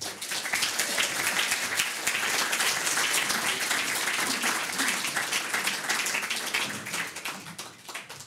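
Audience applauding, a dense run of many hands clapping that dies away near the end.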